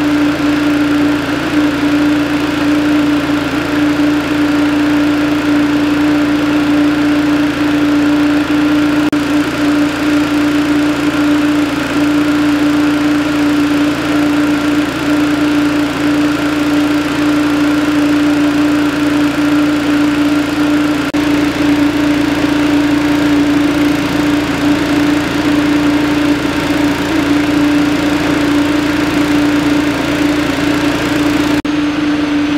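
A small gasoline engine runs steadily at one constant speed, giving an unbroken hum with a strong steady tone.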